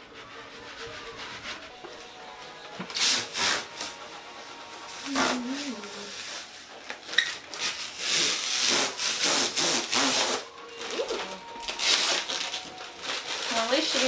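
Irregular rubbing and scraping strokes of kitchen cleaning, then a dense rustle of clear plastic protective film being peeled off a new fridge about eight seconds in.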